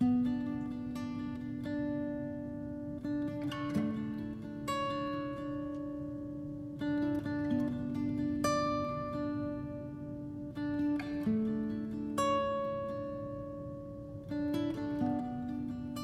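Music: an acoustic guitar plays a slow song intro, picking single notes every second or two and letting them ring over held lower notes.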